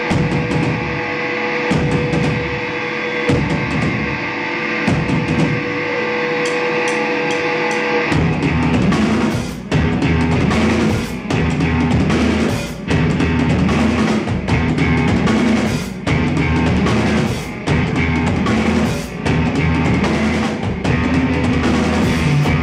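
Live instrumental rock from electric guitar and drum kit. For the first eight seconds a held note rings over the drums. Then the band comes in heavier, with more low end and a riff that breaks briefly about every second and a half.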